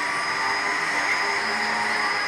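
Steady mechanical drone with a high whine over a hiss, from the Slingshot ride's machinery while the capsule is held before launch.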